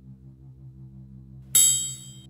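A soft, low background music bed, then about a second and a half in a single bright, ringing electronic chime lasting under a second: a beep from the animated beeper gadget, one of the beeps to be counted.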